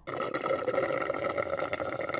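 Cartoon drinking sound effect: a steady liquid slurping noise as orange juice is drunk.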